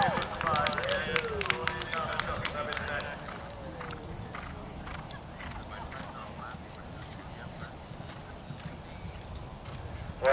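A few spectators clapping in a quick, scattered patter for about three seconds, with faint voices, after which the clapping dies away into a low outdoor murmur.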